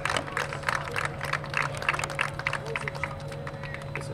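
Spectators clapping: a run of sharp handclaps that thins out in the last second.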